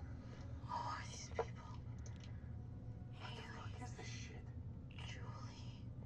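Hushed whispering in three short stretches, with a single sharp tap about a second and a half in, over a steady low hum.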